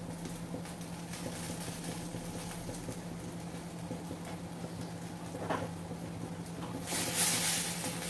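A spatula stirring diced eggplant in a stainless steel frying pan: a short scraping rustle near the end, over a steady low hum and faint hiss.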